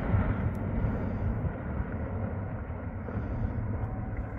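Distant firefighting airplane's engines running as it makes a water drop over a wildfire, heard over a low, uneven rumble. The sound grows slightly fainter as the plane flies off.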